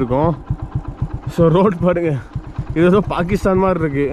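A voice singing a short repeated phrase in long held notes, three times, over the steady running of a motorcycle engine on the move.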